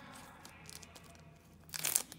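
Foil booster-pack wrapper handled with faint crinkling, then torn open in one short, loud rip near the end.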